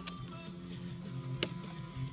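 Quiet guitar music playing steadily, with a sharp plastic click about one and a half seconds in and a lighter one at the start: the latch and hinged door of a cooler's media-player compartment being opened.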